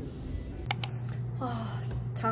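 Two sharp clicks in quick succession less than a second in, then a woman starts speaking over a steady low hum.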